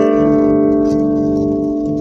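Electric guitar played through a Boss Blues Driver BD-2 overdrive pedal into a small practice amp: a last chord left to ring. It fades slowly, its upper notes dying first while the lower notes sustain.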